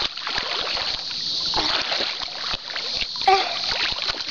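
Lake water splashing and sloshing close to the microphone as swimmers thrash about, with a short voice about three seconds in.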